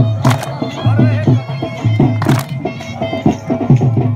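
Traditional Saraiki jhumar folk music with a steady, heavy drum beat and a reedy, pitched melody line over it.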